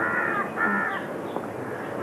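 A crow cawing twice in quick succession in the first second, each caw a harsh call that drops in pitch, over a steady hiss.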